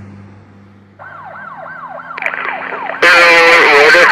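Police siren wailing in quick rising-and-falling sweeps, about four a second. It comes in faintly about a second in and jumps much louder about three seconds in, with a second siren layer joining.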